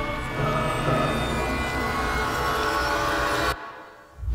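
Horror-style soundtrack drone: several tones held steadily over a low rumble, cutting off suddenly about three and a half seconds in.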